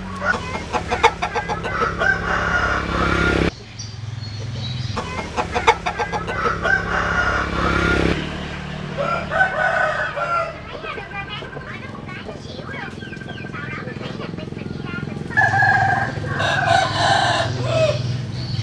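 Vietnamese hybrid roosters crowing: four long crows, one at the start, one about five seconds in, a shorter one about nine seconds in and one near the end, with a steady low hum underneath.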